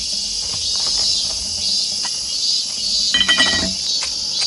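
Steady high-pitched chirring of a late-summer insect chorus. Near the end comes a brief clink and rustle as ground coffee is tipped from a metal cup into a paper filter in a wire pour-over dripper.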